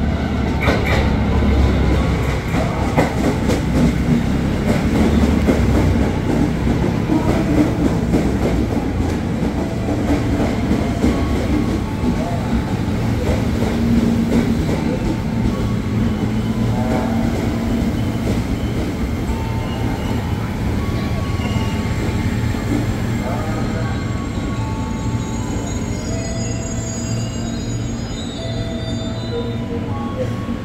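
Electric multiple-unit commuter train pulling into the platform and braking to a stop: heavy rumble and clicking of wheels on the rails, loudest in the first few seconds. In the second half, whistling squeals of wheels and brakes come and go, some stepping or sliding in pitch.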